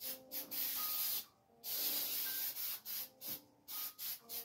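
Aerosol can of chalkboard spray paint hissing as it sprays: several short bursts, with two longer sprays of about a second each in the first half.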